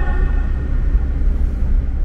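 Wind buffeting the microphone with a steady low road and engine rumble, riding in an open-top Ford Bronco on the move.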